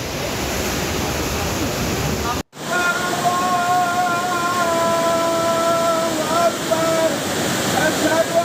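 Cold lahar floodwater rushing through a village street with a continuous loud rush of water. The sound cuts out for a moment about two and a half seconds in. After that, a long held pitched tone sits over the water, breaking briefly twice near the end.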